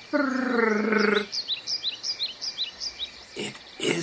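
A drawn-out, low voiced call lasting about a second, like a howl, followed by a quick run of about seven short, high bird chirps.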